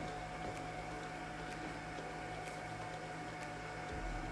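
Low, steady electrical hum with a constant higher whine over it and faint ticks about once a second, from electrical equipment running on the bench.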